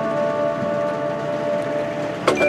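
Marching band holding a sustained chord, several steady pitches sounding together.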